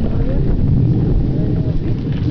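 Wind noise on the microphone, a loud, uneven low rumble, with people's voices talking faintly over it.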